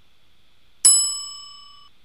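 A single bright notification-bell ding sound effect, struck about a second in and ringing out with several overtones over about a second.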